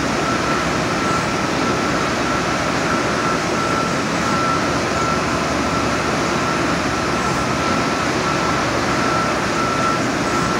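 EFI VUTEk HS100 Pro UV LED wide-format printer running: a steady machine rush and hum, with a single high tone pulsing on and off about once or twice a second.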